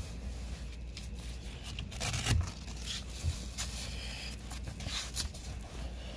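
Hook-and-loop Velcro straps being pulled, ripped and pressed together on a fabric seat cover, with rubbing and scraping of the cover material. Irregular short rasps, the loudest about two seconds in.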